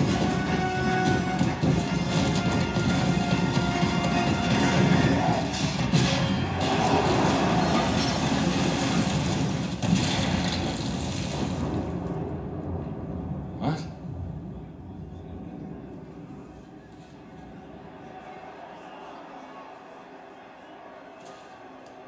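A film soundtrack played loudly through a Yamaha YAS-108 soundbar in its virtual surround mode and heard in the room: a dense, loud mix of music and effects for about twelve seconds, then a quieter stretch with a single sharp click about fourteen seconds in. The reviewer finds surround mode gets a little too distorted at this loudness.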